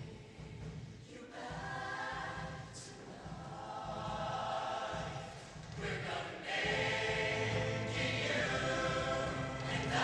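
Show choir singing held chords in harmony, in two phrases: the first starts about a second in, and after a short break near six seconds the second comes in louder.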